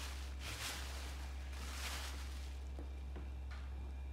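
Thin plastic sheet rustling and crinkling as it is spread over rounds of bread dough, in two soft swishes about half a second and two seconds in. A steady low hum runs underneath.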